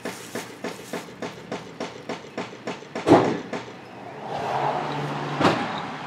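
Rapid, regular mechanical knocking, about five knocks a second, with one louder knock about three seconds in and a steady low hum near the end.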